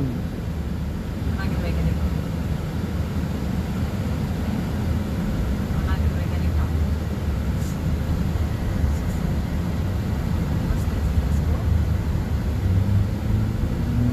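Steady road and engine noise inside a moving car's cabin: a low, even rumble with tyre hiss.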